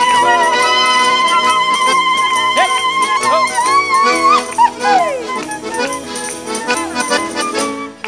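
Live traditional folk-band music: a long high note with vibrato is held for about four seconds and then slides down, over guitars and other strings with a steady jingling beat; the rest is instrumental.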